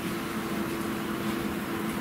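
Steady room tone: a constant low hum under an even hiss, with no change through the pause.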